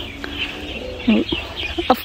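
Small birds chirping, a continuous high twittering.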